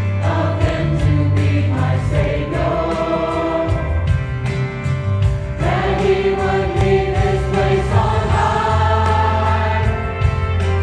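Choir singing a gospel song in held notes over an accompaniment with a bass line and a steady beat, a louder phrase entering about halfway through.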